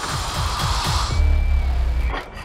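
Dark, trailer-style cinematic music: a few deep falling booms, a hissing swell that peaks about halfway, then a sustained low rumble.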